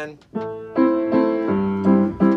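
Upright piano played with both hands: a run of about five chords struck roughly a third of a second apart, each left ringing. These are the chords of the song's A minor section.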